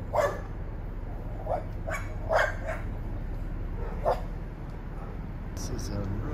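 A dog barking: about six short barks in the first four seconds, the loudest right at the start and about two and a half seconds in, over a steady low rumble.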